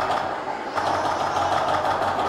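Lion dance percussion playing a fast, continuous roll with no separate beats.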